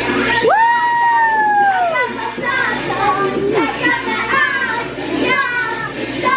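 A girl singing over a music track, holding one long high note for about a second and a half near the start before it drops away, then carrying on in shorter phrases, with other children's voices.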